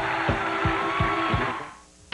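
Studio band's bumper music playing the show into a commercial break: a steady drum beat about three times a second under held notes. The music fades out near the end.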